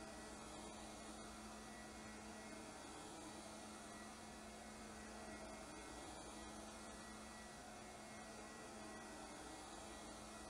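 Lefant M210 robot vacuum running in spiral mode, heard faintly as a steady motor hum with a soft hiss.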